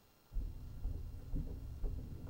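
Muffled footsteps on the floor, about two a second, with a low rumble of clothing rubbing on a clip-on microphone; it starts suddenly after a moment of near silence.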